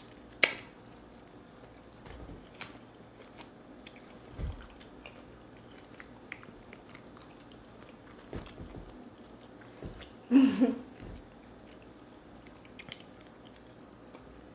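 Close-up chewing and biting on meat pulled from a bone, with faint wet mouth clicks and smacks, a sharp click about half a second in and a short voiced sound about ten seconds in.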